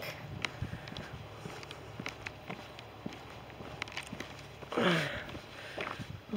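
Footsteps of a person walking along a tarmac country lane, a short click roughly every half second. About five seconds in there is one short vocal sound from the walker.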